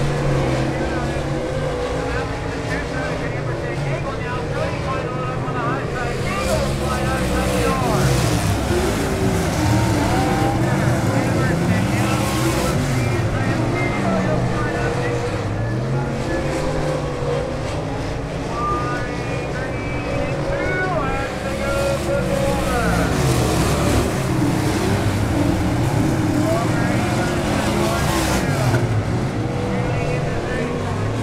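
A pack of dirt late model race cars' V8 engines at racing speed, their notes rising and falling again and again as the cars accelerate down the straights and lift for the turns.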